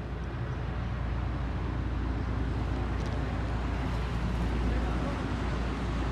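Steady low rumble and road noise of a moving vehicle that carries the microphone, a little louder in the second half.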